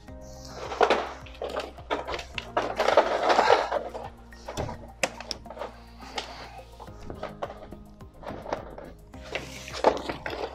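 Background music with steady held tones, over handling noises: knocks and rustles as a plastic underfloor heating pipe is pushed into a manifold fitting and handled, loudest about three seconds in.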